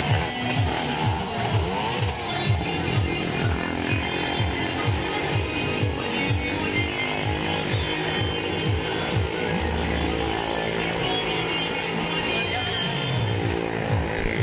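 Loud music with a regular, rhythmic low pulse, mixed with a motorcycle engine running as the bike circles the vertical wall of a well-of-death pit.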